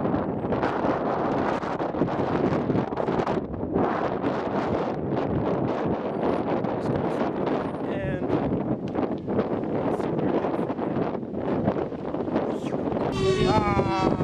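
Wind buffeting a camera's built-in microphone, a steady rough rumble over a man talking. Near the end a loud, raised voice cuts through.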